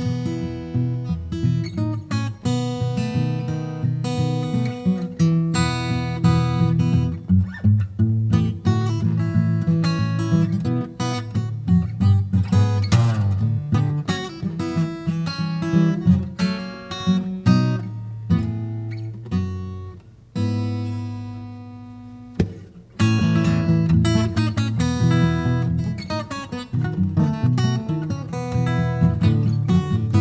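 Taylor 717 Grand Pacific rosewood dreadnought acoustic guitar played fingerstyle: a steady run of plucked melody notes over ringing bass notes. About two-thirds of the way through, a low note is left to ring and fade for a couple of seconds before the playing picks up again.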